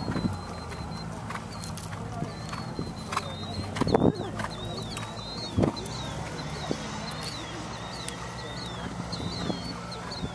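A bird chirping in a quick repeated phrase, over the soft hoofbeats of a horse trotting on sand footing. A short knock about four seconds in is the loudest sound.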